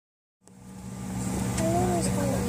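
Airliner jet engines running, heard from inside the passenger cabin as a steady low drone with a faint high whine, fading in from silence about half a second in.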